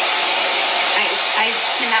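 iTeraCare THz health blower wand running, its small fan giving a steady airy whoosh like a hair dryer.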